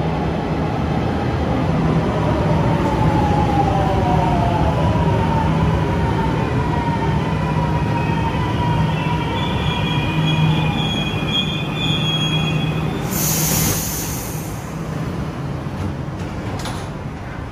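Milan Metro Line 3 train pulling into the station and braking to a stop. A steady low rumble runs under a motor whine that falls in pitch as it slows, then high brake squeals, and a short burst of hiss just before it goes quieter near the end.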